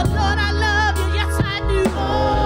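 Gospel praise team singing in harmony through microphones, backed by a live band of keyboard and drums, with a steady low bass and a couple of sharp drum hits in the second half.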